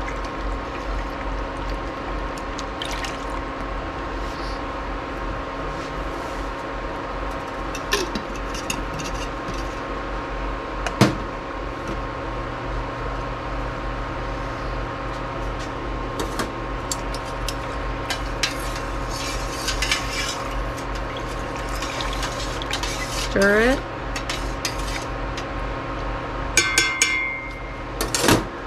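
Dye stock being poured from a plastic measuring cup into a stainless-steel pot of water and stirred, with light splashes and clinks over a steady electrical hum. Near the end there is a short electronic beep from the induction cooktop as the heat is switched on.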